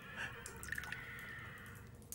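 Wine trickling thinly from a bronze jug into a cup, a faint wavering pour that tails off near the end as the jug runs empty.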